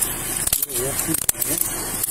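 Clothing rubbing and scraping on a body-worn camera's microphone while handcuffs are put on a man's wrists behind his back, with two sharp clicks about half a second and just over a second in. A low voice is faintly heard in between.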